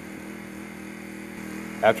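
A steady low hum made of several even, level tones, with a man's voice starting to speak near the end.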